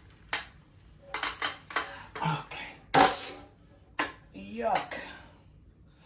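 A metal taping knife spreading joint compound on a drywall ceiling patch, giving several sharp clicks and scrapes spaced about a second apart. A short voiced hum comes about four and a half seconds in.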